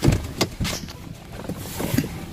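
Knocks and rustling as someone climbs out of a parked car: a sharp knock at the start, another about half a second in, then clothing rubbing against the microphone near the end.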